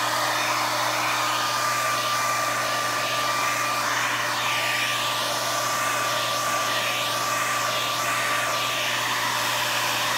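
Revlon handheld hair dryer running steadily, a continuous rush of air with a steady high whine from its motor, blowing out wet acrylic paint on a canvas. In the middle the hiss sweeps up and down as the dryer is moved about over the paint.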